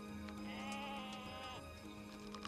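A goat bleating once, a single quavering call lasting about a second, over a soft background music score.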